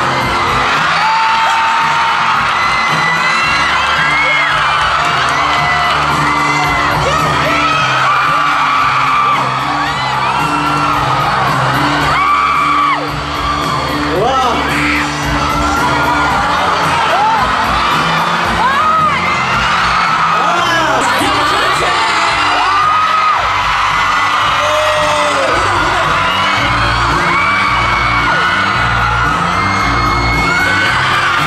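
Upbeat pop dance music playing loud over a concert sound system, with a crowd of fans screaming and cheering over it throughout.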